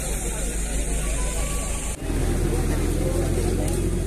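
People talking over a steady background, then an abrupt cut about two seconds in to a vehicle engine idling with a steady low hum, voices continuing over it.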